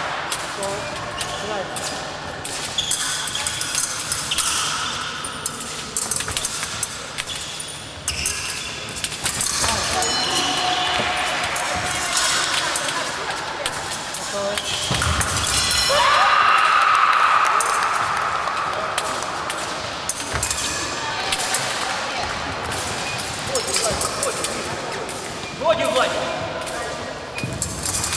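Fencing footwork on a wooden sports-hall floor: feet stamping and thudding in quick, uneven knocks, with light clicks of blades, echoing in the large hall amid voices.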